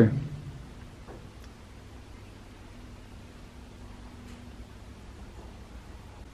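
Quiet room tone: a low steady hum with a couple of faint clicks.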